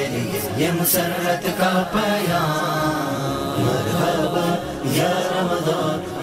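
Chanted vocal music: a voice singing drawn-out, gliding notes.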